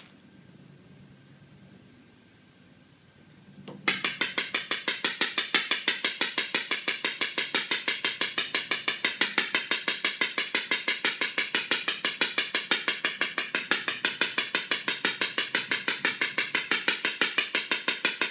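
Extracorporeal shock wave therapy applicator firing shock wave pulses into a horse's back: a rapid, even train of sharp clicks, several a second. It starts suddenly about four seconds in, after a faint room tone.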